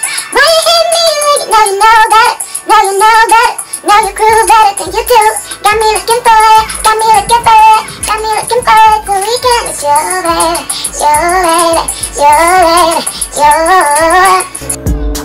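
Music: a song with a high sung vocal melody, with a low beat coming in about four seconds in.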